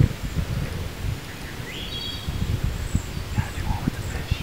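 Outdoor ambience: wind buffeting the microphone in irregular low rumbles over a steady hiss, with a bird chirping briefly about halfway through.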